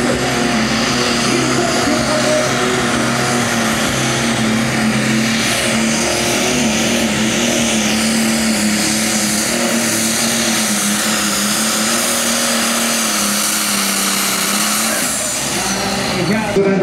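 Light Super Stock pulling tractor's turbocharged diesel engine running loud and steady at full power as it drags the weight sled, with a falling whine near the end.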